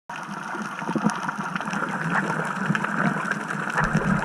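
Underwater ambience picked up by a camera in a housing: a steady hiss and rumble with scattered short clicks.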